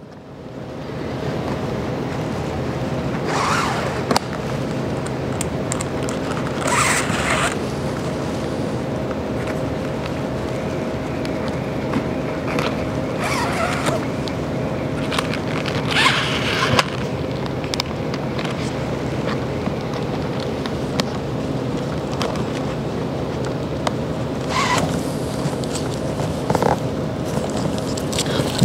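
Thin steel BOA lace cable being drawn through a snowboard boot's plastic lace guides, a brief zipping scrape about five times, over a steady background hiss with faint held tones.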